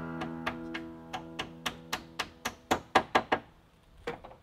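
A run of sharp strikes, about four a second with one short pause, growing louder near the end, as a wooden dowel is hammered into a hole drilled through the chestnut roof poles. Acoustic guitar music fades out under the first part.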